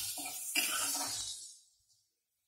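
Chopped onions sizzling in ghee in a non-stick kadhai as a spatula stirs them, with a few scrapes and knocks against the pan. The sound fades out and cuts to silence about a second and a half in.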